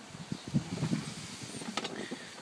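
Soft footsteps and scuffs on paving with handling noise, then sharper clicks near the end as the door of a Ford FG Falcon ute is unlatched and opened.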